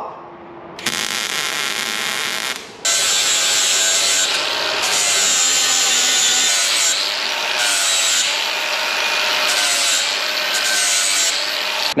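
MIG welder running a short bead on the steel tube's end cap, a steady crackling hiss for about two seconds. Then an angle grinder grinds the steel weld, a continuous grinding with a motor whine that wavers as the disc is pressed and eased.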